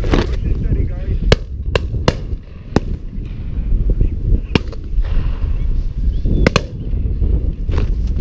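About half a dozen sharp shotgun shots spread over several seconds, the loudest just over a second in, over heavy wind rumble on the microphone.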